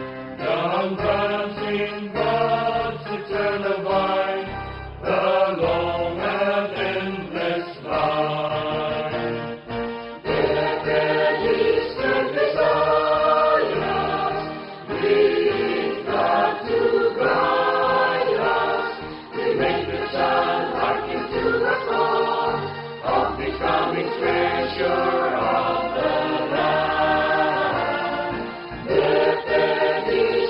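A hymn sung in English by several voices, with instrumental accompaniment and long held notes.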